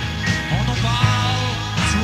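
Rock band playing live: a full band with a steady bass and chords, and a melodic line bending in pitch over it from about half a second in.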